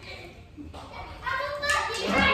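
Speech: a person talking. The first second is quieter, and the voice starts about a second in.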